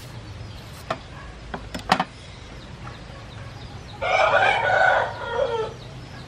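A rooster crows once, about four seconds in: a call of under two seconds that falls away at the end. Before it come a few short clicks.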